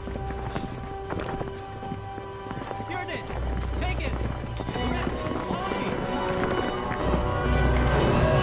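Film soundtrack: music that swells in loudness toward the end over a busy clatter of quick knocks and steps.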